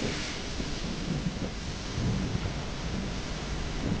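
Wind buffeting the microphone in a steady low rumble, over the wash of breaking surf.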